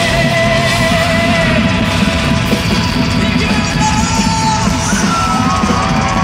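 A live pop-rock band plays loudly through a concert hall's sound system, heard from within the audience, with a voice singing and yelling over it. A few sung notes glide near the end.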